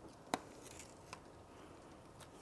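Faint handling sounds as the tail bar light and its cable are worked along a car's trunk lid: a light click about a third of a second in, a fainter one a little after a second, and soft rustling.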